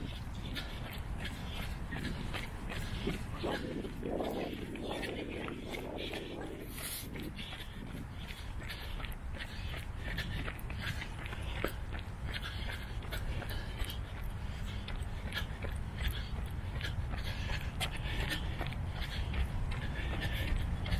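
A runner's heavy panting breath and repeated footfalls on a paved path, steady throughout, over a low wind rumble on the microphone.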